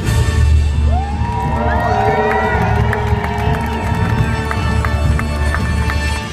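Loud show music over a public-address system with a heavy bass, and an audience cheering and whooping over it from about a second in.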